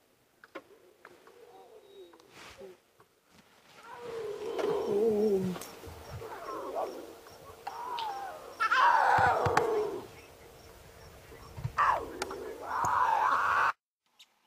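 Wild animal calls: several drawn-out calls that waver up and down in pitch, starting about four seconds in and loudest around nine seconds in, then cutting off suddenly just before the end.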